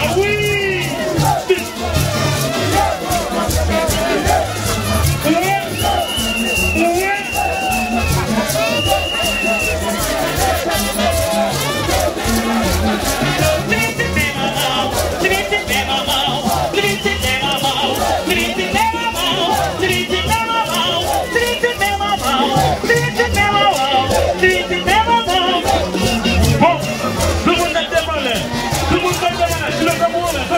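Haitian rara band music played live and loud, with voices singing over the band and a dense crowd. The singing grows fuller and higher from about halfway through.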